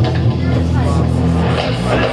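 Loud live noise music: a steady low electronic drone with a voice over it through a microphone, no clear words.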